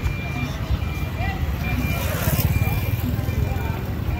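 A vehicle engine rumbling with a high electronic beep repeating about twice a second, typical of a reversing alarm, over faint voices.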